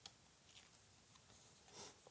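Near silence with faint handling of a small paper sticker between the fingers, and one brief soft paper rustle near the end.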